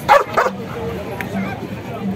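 Belgian Malinois barking twice in quick succession, two sharp barks about a third of a second apart right at the start.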